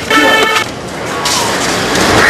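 A vehicle horn honks once for about half a second at the start, a steady multi-note blare. A steady rushing noise of road traffic follows.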